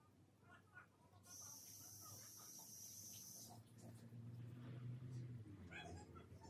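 Near silence: faint room tone, with a faint steady hiss for about two seconds and then a faint low hum.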